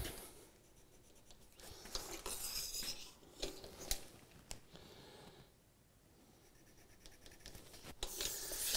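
Pencil scratching short marks on the wooden door rail, with a few light handling clicks.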